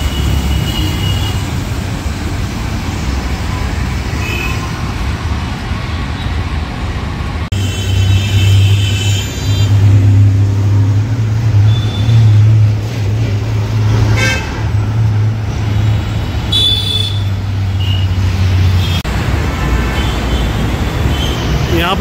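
Busy city road traffic running past, with car horns honking several times. For most of the middle, a loud low engine drone from a city bus running close alongside, which drops away near the end.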